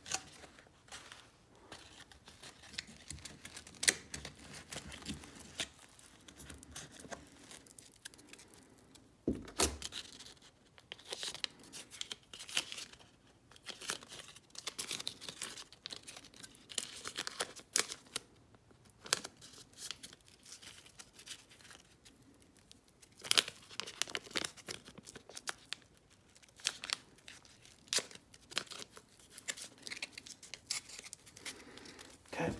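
Sheet of sandpaper crinkling as it is wrapped around a steel tube, and tape being pulled off its roll and torn, with irregular rustling and sharp handling clicks.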